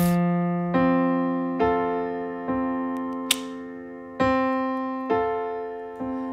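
Piano playing an F major chord pattern: a low bass note struck first and left ringing, then the chord struck again on an even beat, a little under once a second, each strike fading away.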